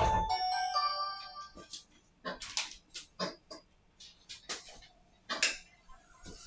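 Huawei MediaPad T5 startup chime playing from the tablet's speaker as it boots, a short run of stepped tones that ends about a second and a half in. It is followed by a string of irregular sharp clicks and taps.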